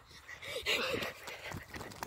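Faint breathing and soft shuffling from a child doing burpees barefoot on asphalt.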